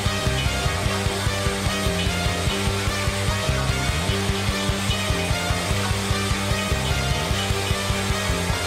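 Rock band playing live: an instrumental passage of electric guitar, bass and drums, with a steady, even beat.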